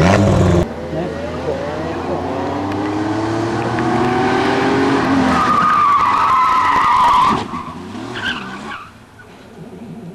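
Half a second of a louder car engine cuts off. Then a classic Porsche 911 Targa's air-cooled flat-six revs up steadily, and its tyres squeal for about two seconds as it slides through a tight bend. The sound drops away about seven seconds in.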